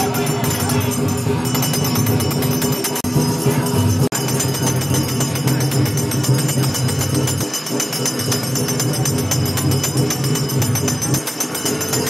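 Music with fast, steady jingling percussion over sustained low tones.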